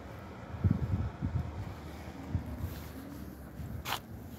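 Wind buffeting the microphone over a low rumble, with uneven gusts about a second in and a sharp click near the end.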